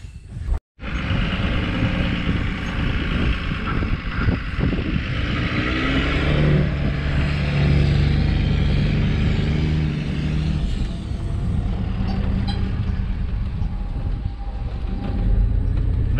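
Pickup truck driving, heard from inside the cab: a steady engine hum with road and rolling noise. The engine note is strongest midway, and the sound starts after a momentary gap.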